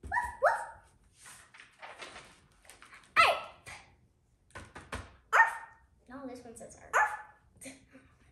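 A young girl imitating a puppy's barks, several short high yips (two close together at the start, then others spread through), with quiet child talk in between.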